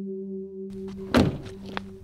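Car door of a Corvette Stingray convertible shutting with a single thunk about a second in, over a sustained ambient music drone.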